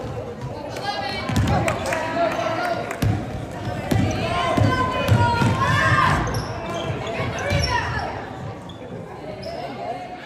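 Live indoor basketball play: a basketball bouncing and knocking on a hardwood gym floor, mixed with players and spectators calling out, echoing in the hall.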